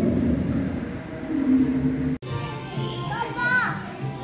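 About two seconds of low, steady indoor hall rumble with a hum. After a sudden cut, high-pitched children's voices call and squeal in an indoor playground, with music in the background.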